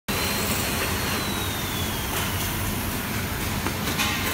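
Stainless-steel bowl cutter running empty, a steady machine noise with a faint high whine that drifts slightly lower over the first couple of seconds.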